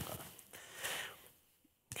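A short, soft breath noise from a person, after a brief spoken "oh".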